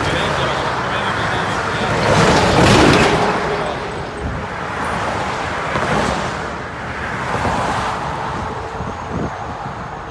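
Highway traffic passing close by: a loud vehicle pass about two to three seconds in, then further passes around six and seven seconds, with the hiss of tyres on concrete.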